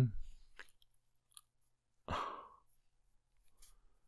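A single audible breath, about half a second long, from a man about two seconds in, with a few faint keyboard clicks before and after it as a formula is typed.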